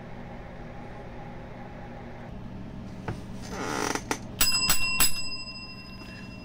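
A small bell struck four times in quick succession about four and a half seconds in, its clear high ring lingering afterwards: the ring bell marking the end of the match. Before it there is a steady low hum and a short burst of noise.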